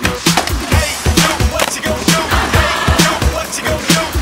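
Music with a steady beat plays over skateboard sounds as a skater rides and tricks on a low backyard rail.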